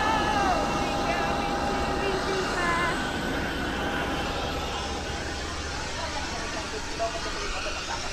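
Steady rushing noise of jet airliners on an airport apron, with a faint steady tone through it, easing off slightly toward the end. Brief faint voices come through now and then.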